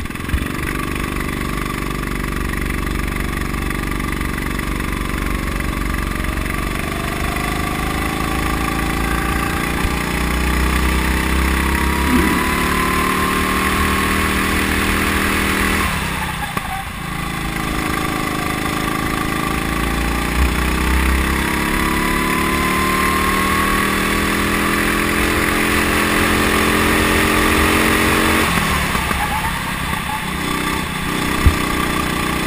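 Go-kart engine heard from onboard under throttle, its pitch climbing steadily for about fifteen seconds. The pitch drops sharply as the driver lifts off for a corner about halfway through, then climbs again and falls once more near the end.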